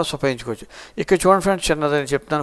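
Speech only: a man narrating, with a short pause about half a second in before he carries on talking.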